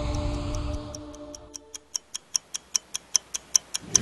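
Clock ticking, about five ticks a second, growing louder toward the end, after the held notes of the intro music fade out in the first second and a half.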